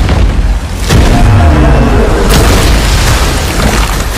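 Film trailer sound design: deep booming hits laid over trailer music, with a heavy hit about a second in and another a little past two seconds.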